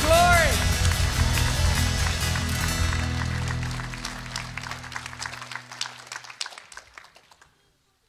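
A live worship band, with singers, guitars, keyboard and drums, holding its closing chord after a last sung note, the sound dying away steadily to near silence over about seven seconds.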